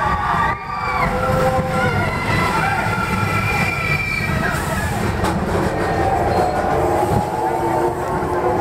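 Expedition Everest roller coaster train running along its track at speed, heard from a rider's seat: a dense rumble with wind on the microphone, and long, wavering high-pitched tones over it.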